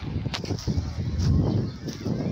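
Pebble beach ambience: close, irregular crunching of footsteps on loose pebbles, with beachgoers' voices in the background.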